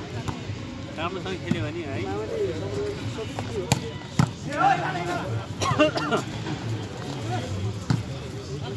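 Volleyball rally: several sharp hand-on-ball hits at irregular intervals, among the shouts and calls of players and spectators.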